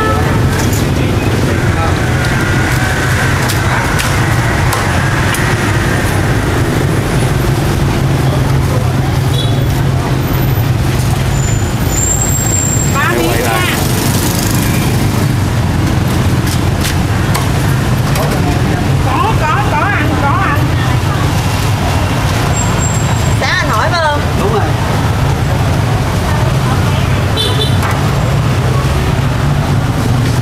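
Steady low rumble of street traffic, with occasional knocks of a cleaver on a wooden chopping block and brief voices in the background.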